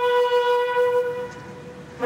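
Military buglers sounding a bugle call in unison: one long held note that fades out a little over a second in, then a brief lull before the next notes begin at the end.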